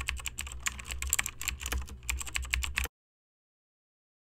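Computer-keyboard typing sound effect: a quick, uneven run of key clicks laid over text typing itself out on screen, stopping suddenly about three seconds in.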